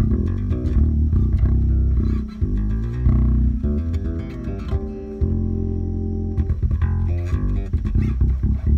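MTD electric bass with a low B string played fingerstyle through a Jeep's car stereo system: a run of plucked notes with a longer held note past the middle, on the back (bridge) pickup with the mids bumped up. It is strung with Ernie Ball Cobalt strings.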